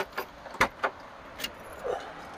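About five short, sharp clicks and knocks at uneven intervals, the loudest just past half a second in, over a faint steady background.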